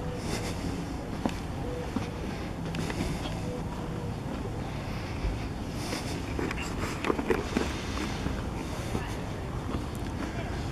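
Street ambience recorded while walking: a steady low rumble with wind on the microphone, faint voices, and scattered clicks and knocks, with a short cluster of louder knocks about seven seconds in.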